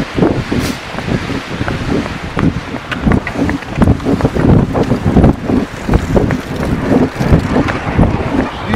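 Wind buffeting a portable recorder's microphone outdoors: a loud low rumble with irregular gusts.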